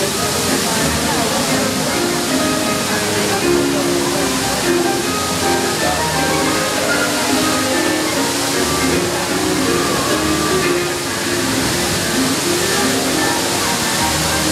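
Water jets of the Magic Fountain rushing and splashing in a steady loud hiss, with music playing through it and a crowd talking.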